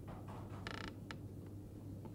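A single short creak a little under a second in, followed by a couple of light clicks, over a low steady hum.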